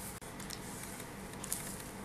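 Faint, soft rubbing of a wooden rolling pin rolling over wholemeal dough on a floured wooden countertop, with a couple of light knocks.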